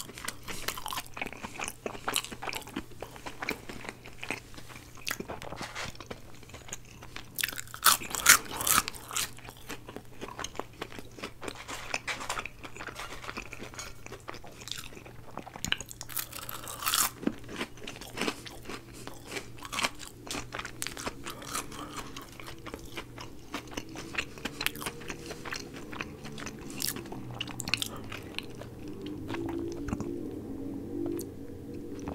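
Close-miked chewing and crunching of curly fries, irregular crisp bites with wet mouth sounds. The loudest crunches come about eight seconds in and again around seventeen seconds.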